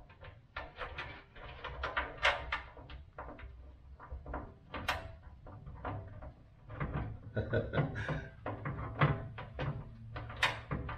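Irregular knocks, clicks and scrapes of a steel front fender being pushed and shifted against the car body while its bolts are started loosely by hand, with a low rumble underneath in the second half.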